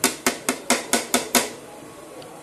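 A ceramic plate knocked about seven times in quick succession against the rim of an aluminium pressure cooker, shaking the last of the ground spices off into the pot; the knocks stop about a second and a half in.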